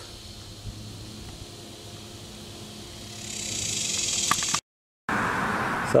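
Faint outdoor background noise: a steady low hum under a soft hiss. About three seconds in, a higher hiss builds up, then cuts off abruptly in a short dropout.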